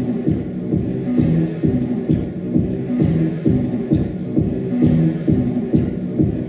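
Live looped music played back through a homemade analog looper, a modified turntable recording to magnetic discs: a low, throbbing repeating pattern of layered tones with a pulse just under once a second.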